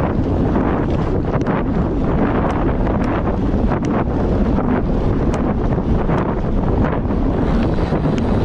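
Wind rushing over the microphone of a handlebar-mounted camera on a bicycle moving at speed: a loud, steady rush with scattered light ticks.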